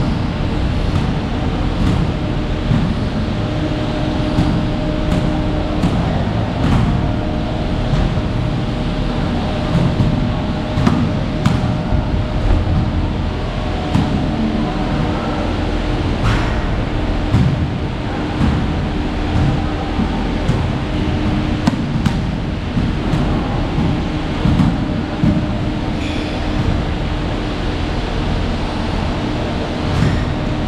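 Gym noise: a steady low rumble with a hum that comes and goes, and scattered knocks and clanks throughout.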